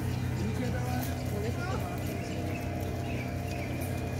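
Small boat's outboard motor running steadily out on the river, a low even drone.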